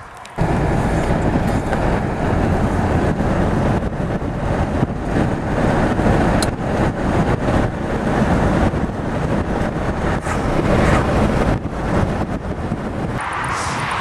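Steady road and engine noise of a moving car, heard from inside the car. It cuts in abruptly about half a second in.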